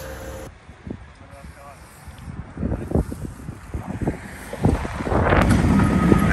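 Wind buffeting the microphone, with scattered low knocks. Engine noise from nearby machinery or traffic builds near the end.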